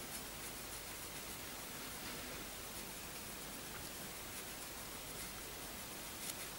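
Faint steady hiss with light, soft rustling from a foundation brush being worked over the skin.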